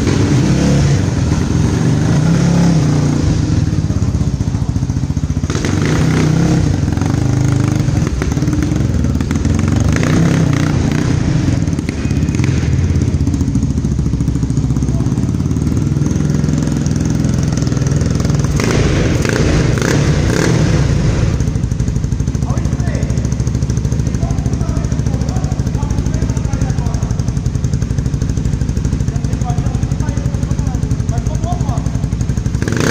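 Honda CBX 250 Twister's single-cylinder four-stroke engine, bored out to 288cc, running steadily at low revs through a loud aftermarket exhaust, with two stretches of harsher rasp about five seconds in and again around nineteen seconds.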